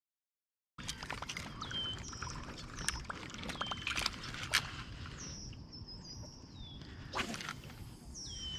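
After about a second of silence, a bird repeats a short high whistle that slides down in pitch, roughly every two seconds. Scattered clicks and light knocks come from handling the fish on a metal lip-grip scale, over low outdoor noise, with a short louder rush of noise a little after seven seconds.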